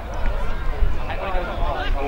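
Several voices calling and shouting at once across an Australian rules football ground, as players and onlookers yell during play, over a low rumble of wind on the microphone.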